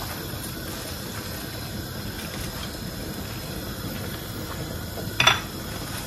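Corned beef and vegetable stew in tomato sauce simmering in a frying pan, a steady hiss of bubbling sauce, with a single short knock about five seconds in.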